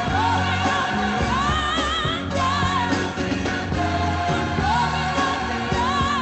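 Recorded gospel song played as the closing hymn: a lead vocal sung with wide vibrato over band accompaniment with a steady bass line.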